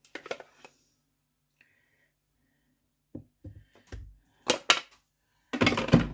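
Kitchen handling sounds: a spoon clinking against a glass jar and knocks on the worktop as the jar is filled with applesauce. They come in short, separate bursts, with a few clicks at the start, several knocks in the middle and the loudest, denser bursts near the end.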